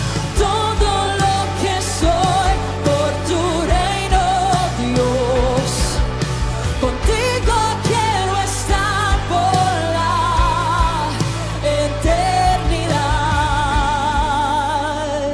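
Live Spanish-language worship song: a woman sings the lead melody with vibrato over a band with drums and a sustained bass.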